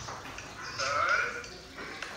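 A short, wavering burst of laughter about a second in.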